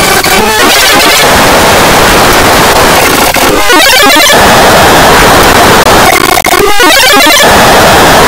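Extremely loud, heavily distorted, clipped noise from audio-effects processing, harsh and static-like. A garbled, warbling texture breaks through three times: near the start, around the middle, and about three quarters of the way in.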